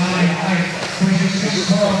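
A race announcer's voice over a public-address system, with a steady low hum and music-like sound underneath in a large hall.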